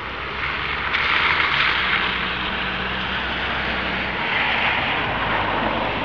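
A vehicle passing on a wet road, its tyres hissing; the sound swells about a second in, holds, and fades at the end.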